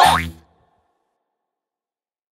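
A cartoon 'boing' sound effect with a quickly rising pitch over the last notes of the music, fading out within about half a second. It is followed by dead silence.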